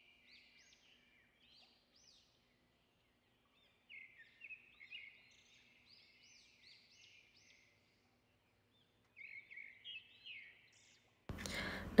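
Faint bird chirps in the background: quick runs of short, high, arched notes, loudest in two clusters about four and nine to ten seconds in.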